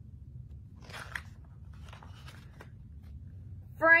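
Paper rustling as a picture book's page is turned, in two faint bursts about a second apart.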